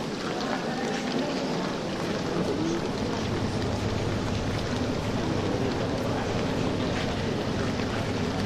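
Indoor swimming pool hall ambience: a steady, echoing wash of water noise from swimmers splashing, with faint indistinct voices.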